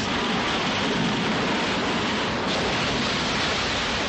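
Heavy seas breaking over a submarine's conning tower: a steady, dense rush of water and spray with no pauses.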